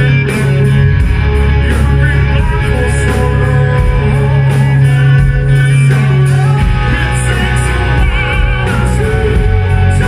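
Live hard rock band playing loudly: distorted electric guitars, bass guitar and drums, with a male singer on lead vocals.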